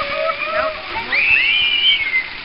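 Steady rush of water, with people's voices calling out over it in long, gliding tones; the highest call rises and falls in the second half.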